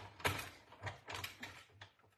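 Manual die-cutting machine being hand-cranked, its rollers pressing a cutting-plate sandwich through with a string of quiet, irregular creaks and clicks.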